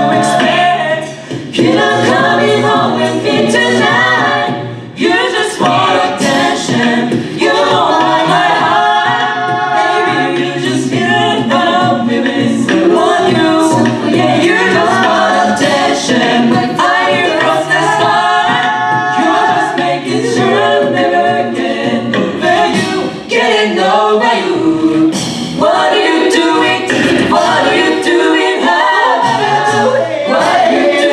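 Mixed-voice a cappella group singing an upbeat pop cover, several voice parts in harmony with no instruments, and a steady beat from vocal percussion.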